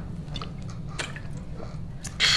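A person drinking from a water bottle: a few soft gulps and swallows over a steady low room hum.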